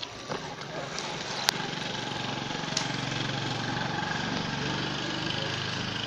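A steady, even motor hum that sets in about a second and a half in, with a few sharp clicks over it.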